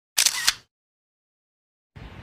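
DSLR camera shutter firing once: a half-second click-and-clack of mirror and shutter, ending in a sharper click.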